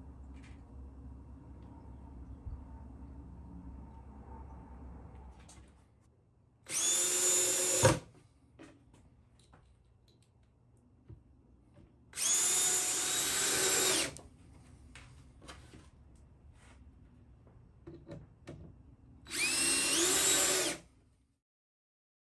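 DeWalt cordless drill driving screws through a plywood top into the box sides: three bursts of motor whine, each about one and a half to two seconds long and rising in pitch as it spins up. The first burst ends in a sharp crack.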